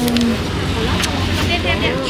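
Indistinct background voices over a steady low rumble and general noise.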